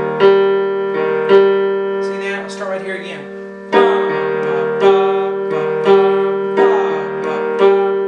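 Piano playing a slow passage of minor chords over bass octaves, the right-hand chord and the left-hand octave slightly offset. A new chord comes about every second, with a pause of about two seconds in the middle.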